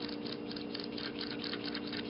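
Faint, irregular small metal clicks and scrapes as a SCAR gas piston shaft is worked through the sharp-edged scraping hole of a cleaning tool, over a steady low hum.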